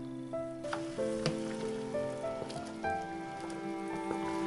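Prunes in mulled wine bubbling at a boil in a steel saucepan, with scattered pops and the scrape of a wooden spoon stirring. Background music of held notes plays over it.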